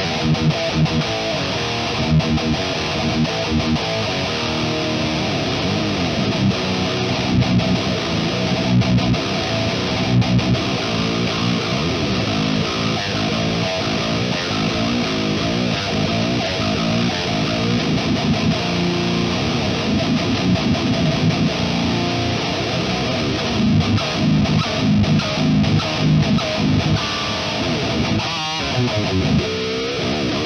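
Distorted electric guitar playing a heavy metal riff with rhythmic low chugs, through an amp sim and an impulse response of a Marshall 1960 cabinet with a Celestion Vintage 30 speaker, captured with a single sE V7X microphone.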